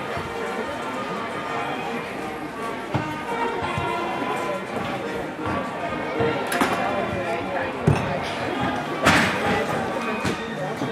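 Gymnastics hall sound: music and voices in a large echoing hall, broken by several thuds of gymnasts landing on the balance beam and mats, the loudest near the end.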